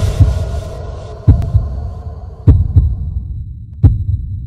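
Heartbeat sound effect: four slow double thumps, lub-dub, about one every 1.3 seconds. A lingering tone from the preceding music fades out during the first second.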